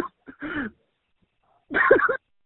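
Two brief bursts of a person's voice, one just after the start and one near the end, too short or garbled to make out as words.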